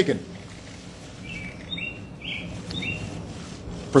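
Outdoor ambience with a steady low hum, and small birds giving about half a dozen short chirps from about a second in until about three seconds in.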